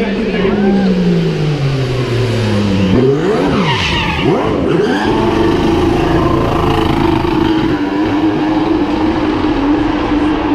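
Mercedes Formula 1 car's 1.6-litre V6 turbo hybrid engine under power while it spins donuts with the rear tyres spinning. The engine pitch falls over the first three seconds, rises and drops quickly, then holds at steady high revs.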